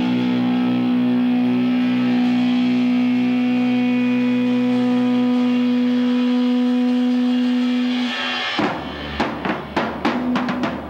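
Electric guitar through a Marshall stack holding one long sustained chord that rings out steadily, then stops about eight and a half seconds in; scattered drum hits follow near the end.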